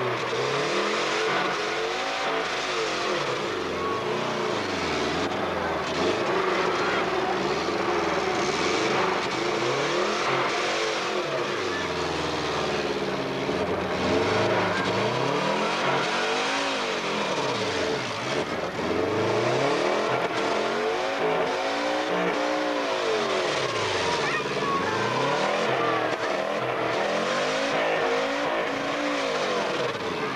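Subaru RX Turbo rally car's engine revving up and dropping back over and over, each rise and fall lasting about two seconds.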